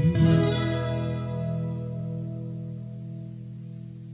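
The final chord of a Coimbra fado's guitar accompaniment, Portuguese guitar with classical guitar, is struck just as the singer's held vibrato note ends. It is left to ring, dying away slowly.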